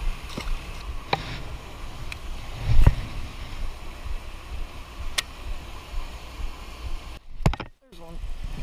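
Steady rushing outdoor noise with a few sharp clicks and one louder low thump about three seconds in, then a short dropout to silence near the end.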